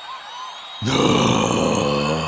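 A man's voice giving a long, breathy, growling "hah" exhale. It starts about a second in and lasts about a second and a half.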